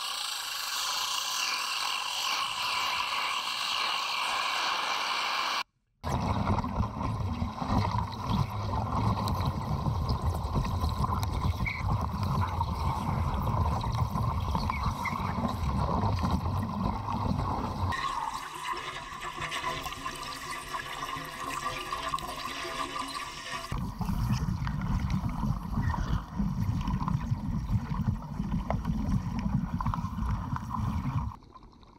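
Underwater wet arc welding heard through the water: dense, low crackling and bubbling from the arc and the gas bubbles it releases. There are several cuts: a hissing stretch at first, a brief drop-out about six seconds in, then the low crackling and bubbling, which changes character for a few seconds in the middle.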